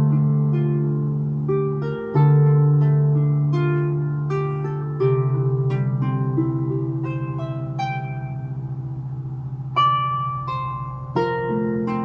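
Solo harp playing: plucked melody notes and chords over low bass strings, each note ringing and slowly fading, with new chords struck every few seconds.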